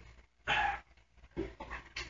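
A short breath drawn in, heard once about half a second in, followed by a few faint small noises.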